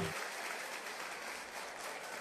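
Faint live-audience applause, an even patter of clapping without music.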